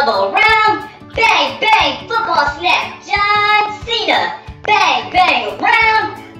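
A high-pitched voice singing in short phrases over backing music with a steady low beat: a TikTok dance-tutorial song.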